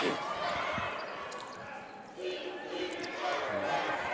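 Basketball dribbling on a hardwood court, with scattered voices in the background.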